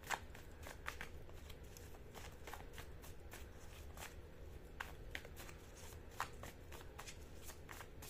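A deck of tarot cards being shuffled by hand: a faint, irregular patter of card flicks and taps, with a few sharper snaps.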